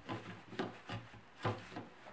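Plastic trash-bag holder frame being fitted onto a wooden kitchen cabinet door: a few soft knocks and rubbing of plastic against the door, with a plastic bag rustling.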